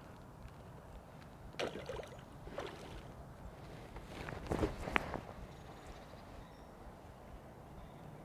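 Water splashing as a hooked roach thrashes at the surface and is drawn over the landing net. There are two bouts, about a second and a half in and a louder one around four to five seconds in, the second ending with a sharp click.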